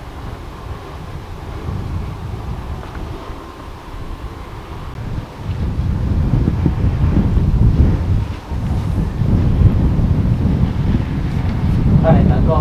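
Wind buffeting the camera microphone, a low rumble that grows louder about halfway through and drops out briefly once.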